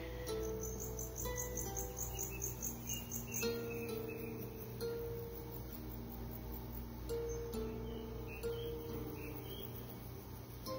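Calm background music with slow, sustained notes that change pitch every second or so. A fast, high chirping, about four a second, runs over it for the first few seconds.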